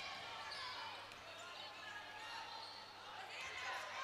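Faint game sound of a basketball being dribbled on a hardwood court, with distant voices.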